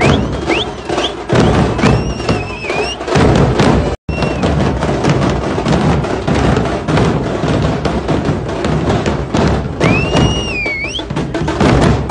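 Loud, rapid drumming in a celebrating street crowd, with shrill whistles that rise and fall over the din, the longest near the end. The sound cuts out for an instant about four seconds in.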